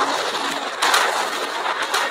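Rocket launch sound effect: loud, steady rushing noise of the rocket engines igniting at liftoff, swelling about a second in.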